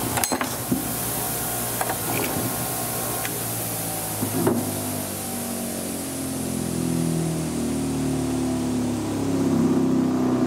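Bench grinder motor running with a steady hum, with a few sharp knocks in the first half of handling at the grinder.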